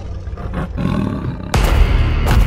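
A large animal's deep roar that breaks in loudly about one and a half seconds in, over music.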